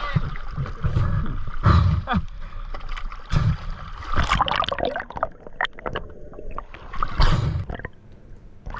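Sea water sloshing and splashing around a camera at the water's surface, with heavy irregular surges as waves wash over it and gurgling as it dips under.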